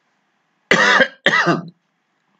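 A man coughing twice in quick succession, two short bursts about half a second apart, the second trailing off.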